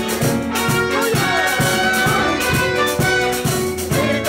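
A live band playing music, with a steady percussion beat under sustained melody lines.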